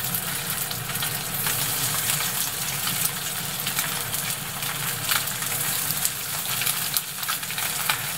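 Horse mackerel fillets sizzling in hot salad oil in a frying pan as they are laid in skin-side down one after another, a steady hiss with crackles and spits throughout.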